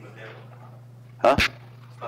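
A man coughing twice in quick succession close to the microphone, about a second in, much louder than the talk around it.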